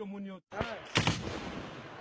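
A man's shout, then after a brief break people shouting in the street, with one loud, sharp gunshot report about a second in.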